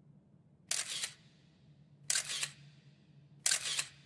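Three camera shutter clicks, evenly spaced about a second and a half apart, each short and sharp with little bass. A faint low hum runs underneath.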